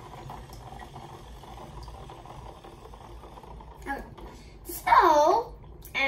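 Water sloshing and lapping as a toy submarine is pushed around by hand in a shallow tub of water, then a brief, loud vocal sound about five seconds in.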